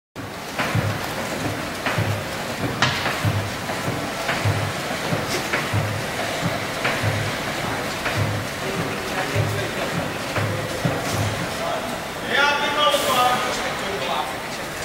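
Hydraulic wheel-play detector plates shifting a truck's wheel back and forth: a low pulsing hum with a knock at each stroke, repeating irregularly about once a second and stopping about 11 seconds in, as the steering and suspension joints are checked for play. A man's voice speaks briefly near the end.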